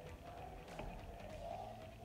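A ladle stirring a pot of meatball and vegetable soup, with a few faint clinks, over a low steady hum.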